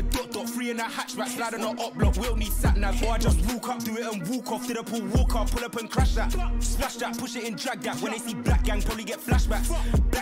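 UK drill track playing: a rapper delivering fast, tightly packed verses over a beat with deep bass notes that drop in and out every second or two.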